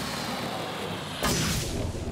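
Logo-animation sound effect: a steady whooshing rush, then a loud boom with a low rumble about a second and a quarter in.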